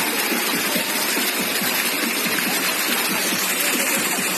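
Shallow stream water running steadily over a rock ledge, an even unbroken rush.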